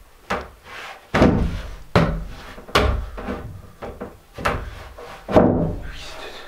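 Wooden sauna bench boards being handled and set down on their supports: a series of sharp wooden knocks and thuds, roughly one a second.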